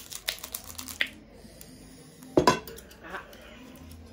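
Chopsticks clicking and tapping against ceramic plates of noodles, several light sharp clicks in the first second.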